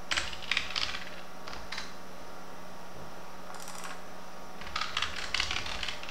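Computer keyboard typing in short bursts of quick key clicks, with pauses between them.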